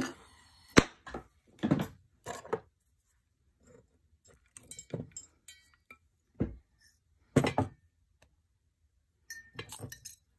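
Short metal clinks and taps in small groups about every second or so: steel tweezers and a freshly soldered chain link knocking against the honeycomb soldering board and tools.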